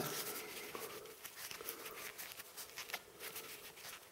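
Faint handling noise of a small action camera and its protective tube being turned in the hands: soft rustling and scraping with a few light clicks.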